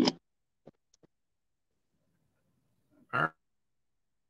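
Choppy video-call audio dropping out: a clipped scrap of a man's voice at the very start and another short scrap about three seconds in, with dead silence between where the connection cuts out.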